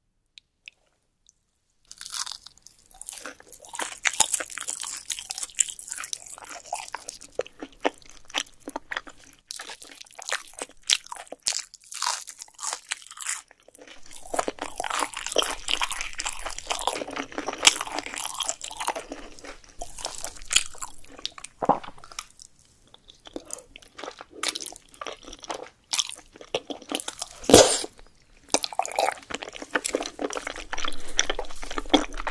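Close-up chewing of a crisp, sauce-coated fried twigim: dense, irregular crunching of the breaded batter that starts about two seconds in and goes on with only brief pauses. There is one sharp, louder crack near the end.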